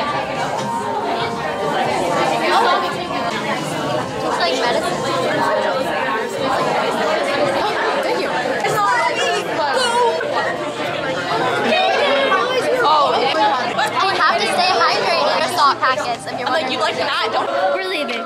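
Many voices talking at once in a large, crowded room: dense, overlapping chatter with no single voice standing out.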